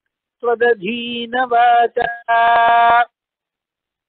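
A man chanting a line of verse in a sung, melodic recitation, holding long steady notes, the last and longest ending about three seconds in.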